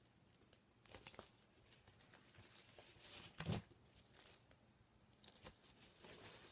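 Faint rustling and brushing of a cardboard LP jacket and its paper inner sleeve being handled, with a few soft scrapes, the loudest about three and a half seconds in.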